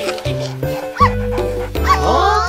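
Two short cartoon puppy yips, about a second in and near the end, over steady background children's music.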